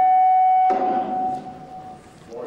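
Public-address feedback from the podium microphone: a loud, steady whistle at one pitch with a few fainter overtones. It cuts off suddenly under a second in, and a fainter tone at the same pitch lingers and dies away near the end.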